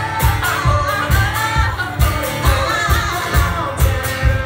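Live acoustic pop-rock band: a woman singing a held, wavering melody over cello and acoustic guitar, with a steady low thump about twice a second keeping the beat.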